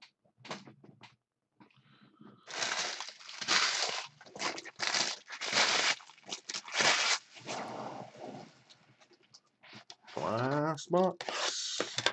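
Plastic packaging crinkling and tearing in a run of short bursts, then a brief rising vocal sound near the end.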